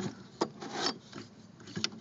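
Two small, sharp clicks, one about half a second in and one near the end, with faint rubbing between them, from parts being handled.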